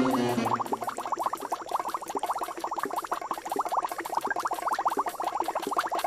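Cartoon bubbling sound effect: a fast, continuous stream of short rising blips, like bubbles rising through water.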